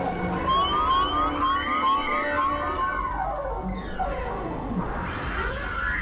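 Experimental electronic synthesizer music of drones and tones. Early on, short rising tone blips repeat. From about halfway, long pitch glides fall, over a low steady drone.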